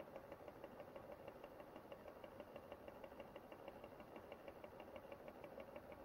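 Faint hum and rapid, even ticking of a small electric turntable motor slowly rotating a display stand.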